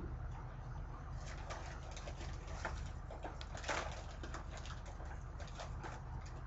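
Crunchy tortilla chips (Doritos salsa flavour) being eaten: a run of short, sharp crackles and crunches starting about a second in, over a steady low hum.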